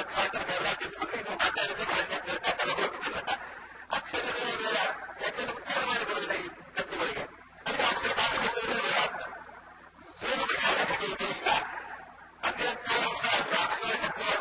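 A man's voice giving a spoken discourse in phrases of two to three seconds with short pauses between them.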